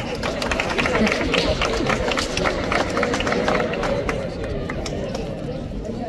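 Scattered audience applause over crowd chatter, the clapping densest in the first few seconds and thinning out toward the end.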